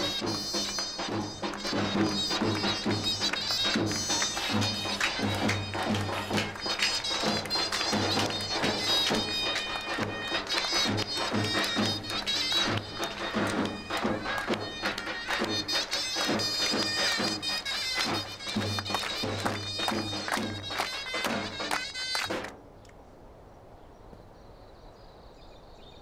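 Davul and zurna playing a lively traditional Turkish dance tune: the zurna's shrill, reedy melody over the beat of the bass drum. The music cuts off suddenly near the end.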